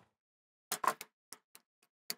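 A hand screwdriver backing a Robertson screw out of a furnace cover grille: about six short, sharp clicks and taps at uneven intervals in the second half.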